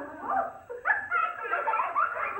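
Young children's high-pitched excited voices, squealing and calling out in short gliding cries that break off and start again.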